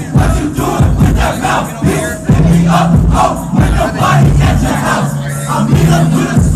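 Hip-hop track with deep, long bass notes and kick drums playing loud through a club PA, with a packed crowd shouting along over it.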